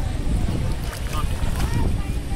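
Wind buffeting the microphone over the wash of shallow sea water, with faint voices in the background.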